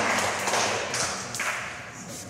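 Audience applause dying away, thinning from a dense clapping to a few scattered claps and fading toward the end.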